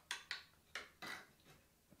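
A few faint, sharp clicks of metal and plastic as the locking lever of an LGA1151 CPU socket is pressed down under tension and the socket's black plastic cover pops off the load plate.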